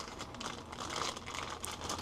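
Thin clear plastic bag crinkling softly in small irregular crackles as hands pull it off a handheld refractometer.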